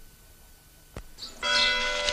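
Two sharp clicks in a quiet gap, about a second apart, typical of splices between commercials on old tape. Then, about a second and a half in, bells start ringing loudly with several sustained tones, opening the next commercial's soundtrack.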